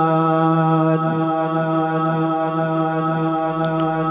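A man reciting the Quran in melodic tajweed style, holding one long steady note on a single pitch through a microphone, the drawn-out end of a verse.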